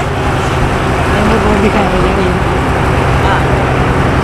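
A wooden fishing boat's diesel engine running steadily as the boat moves off, a low even drone.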